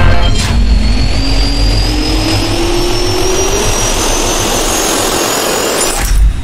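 Jet engine spool-up sound effect: a loud rush of air with a whine that rises steadily in pitch and cuts off at the end.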